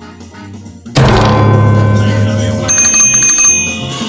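Outro music: a quiet music bed, then about a second in a loud music sting starts suddenly with a hit and carries on loud, with a high steady ringing tone through its second half.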